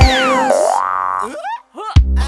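Cartoon sound effects while the music's beat drops out: a falling whistle glide, then a rising slide-whistle glide, then a few quick springy upward boings near the end.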